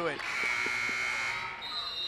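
Gym scoreboard horn sounding one steady, buzzy blast for about a second and a half as play stops. A thin, high steady tone starts near the end.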